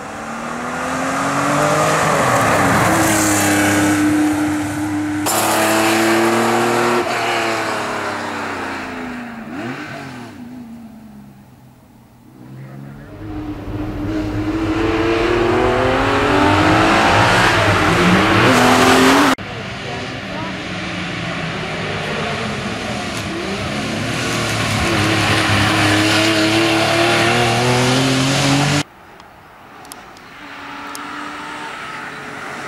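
Porsche 911 SC's air-cooled flat-six racing uphill, its pitch climbing hard and dropping again at each gear change. The sound swells as the car approaches and passes, fades away, and then comes back. It breaks off abruptly three times.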